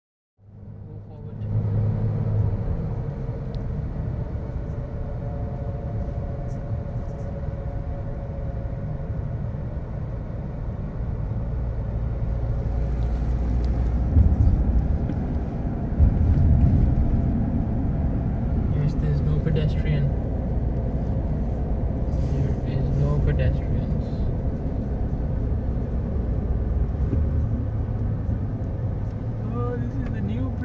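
Road noise inside a moving car's cabin: a steady low rumble of the engine and tyres on the motorway, with two sharp thumps about halfway through.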